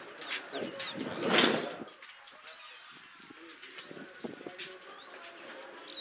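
Birds calling with short chirps. A louder burst of noise comes about a second in.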